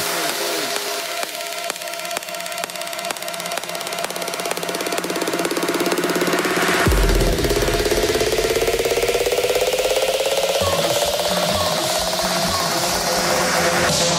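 House music in a DJ mix at a build-up. The bass drops out for the first half and returns about seven seconds in, under a fast repeating stutter. A synth tone rises steadily through the second half toward the drop.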